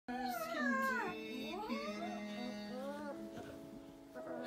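Labradoodle puppy howling, a high wavering cry that slides down and back up in pitch for about three seconds, over background hymn music with held chords.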